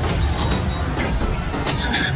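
Loud, steady rumble of action sound effects in an animated fight, with short noisy hits and a brief high whoosh about a second in, as a glowing sword strikes amid flames.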